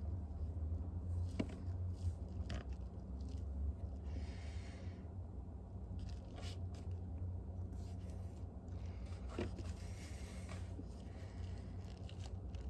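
Steady low electric hum of an open freezer running, with a few faint clicks and two short soft rustles as the person leaning into it shifts.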